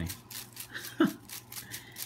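Folded paper slips rustling and tumbling in a mesh basket shaken rhythmically, about four shakes a second. A short vocal sound, falling in pitch, cuts in about a second in.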